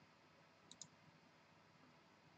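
Near silence with two faint, short clicks close together about three-quarters of a second in.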